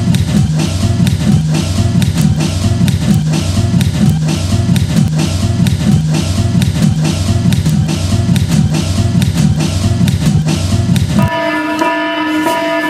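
Recorded backing music for a stage performance: a fast, steady drum beat over a repeating low bass figure. About eleven seconds in it cuts off suddenly and gives way to held, sustained notes.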